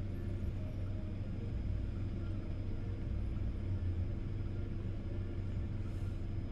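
Steady low rumble inside the cabin of a 2013 Toyota Camry 2.5 G, from its 2.5-litre four-cylinder engine idling.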